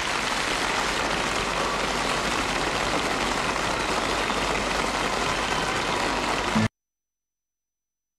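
Steady hissing noise with no tone or rhythm in it, cutting off suddenly near the end.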